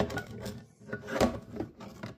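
Hard PETG 3D-printed part scraping and knocking against a textured build plate as it is handled and tilted, in a few irregular scrapes, the loudest about a second in.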